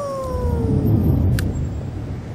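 A wordless, meow-like vocal sound effect: one long note that rises briefly, then slowly slides down and fades about a second in. A low rumble swells beneath it, and there is a sharp click near the end.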